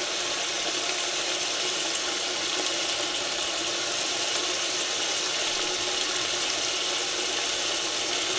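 A steady, even background hiss with a faint hum, unchanging throughout and with no distinct knocks or clicks.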